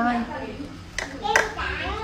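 A woman's voice trails off, then two sharp knocks about a third of a second apart, the second louder, followed by soft vocal sounds.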